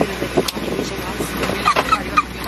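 Steady low drone of an airliner cabin, with people's voices over it.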